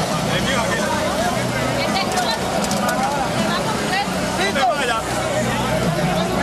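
Crowd chatter: many voices talking over one another, with a steady low hum underneath.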